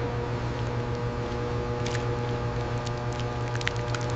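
Liquid splashing and dripping as a wet snake skin is lifted out of a tanning-dye vat, heard as scattered short drips and splats over a steady low machine hum.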